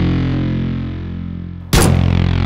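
Background music of distorted, effects-laden electric guitar over sustained low notes, easing slightly in level, cut by one sharp, loud bang near the end before the music carries on.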